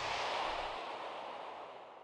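A soft whoosh-like swell of noise that peaks in the first half-second and then fades away over about two seconds, as on an outro logo transition.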